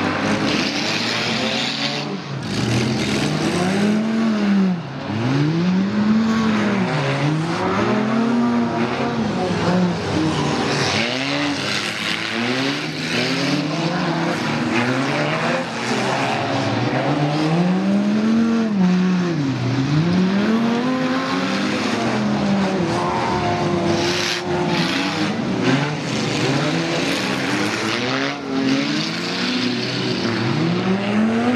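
Several stock cars racing on a dirt track, their engines revving up and backing off again and again, each rise and fall in pitch lasting a couple of seconds, with several engine notes overlapping.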